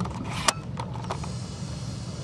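Steady low background rumble, with one sharp click about half a second in.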